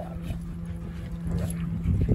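A dog vocalizing during rough play with other dogs, the sounds busier in the second half.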